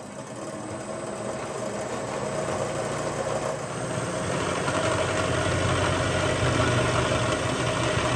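Bridgeport milling machine's end mill cutting into the cast iron differential housing of a Dana 60 axle: a steady machining noise over the motor hum, growing gradually louder as the cutter bites into the metal.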